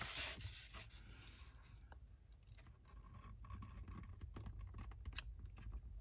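Faint rustling and light taps of a cardstock sheet being folded in at its corners and creased by hand on a scoring board, with one sharper tick near the end.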